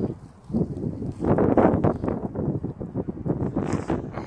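Wind buffeting the microphone in uneven gusts, with a brief lull just after the start and the strongest gust about a second and a half in.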